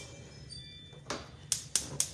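Gas stove burner's spark igniter clicking as the knob is turned to light the burner: a run of sharp clicks, about four a second, beginning about a second in.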